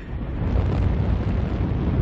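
A steady low rumbling noise, deepest in the bass, with no voice over it.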